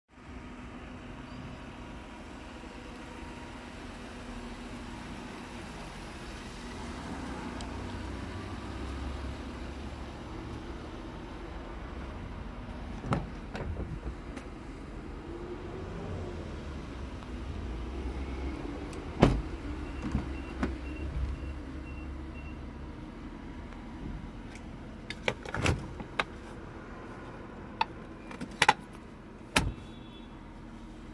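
Clicks and knocks from a 2010 Mazda CX-9's doors and interior being handled, over a steady low rumble that fades about two-thirds of the way through. A quick run of about half a dozen high beeps comes about twenty seconds in.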